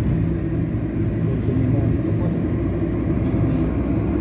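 Steady low rumble of a car's engine and tyre noise, heard from inside the cabin while driving along a paved road.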